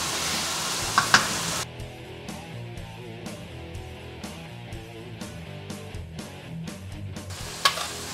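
Minced veal frying in a pan, sizzling steadily. About a second and a half in, the sizzle cuts off and gives way to background music with a steady beat. The sizzle comes back near the end.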